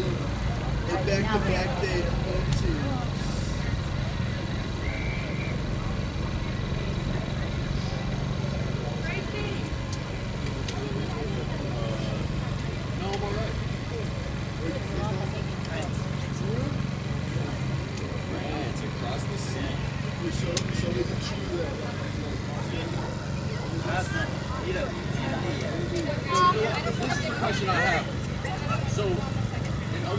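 Faint, scattered chatter and calls from players and people on the sideline over a steady low hum, like distant road traffic.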